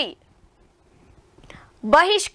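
A pause in a narrator's speech: the voice ends a phrase right at the start, then near silence with a faint intake of breath, and the voice starts again near the end.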